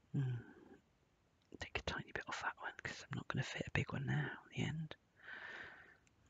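A woman muttering and whispering under her breath, with no words clear enough to make out, ending in a breathy hiss.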